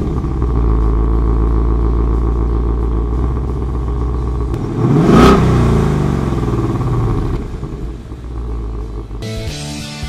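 Ford Mustang GT's 5.0-litre V8 idling through its exhaust just after being started, with a deep steady rumble; about five seconds in it is reved once, the pitch rising and falling before it settles back to idle.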